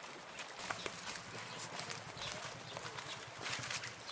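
A small engine running at idle, a low even pulsing, with scattered short knocks and clicks over it.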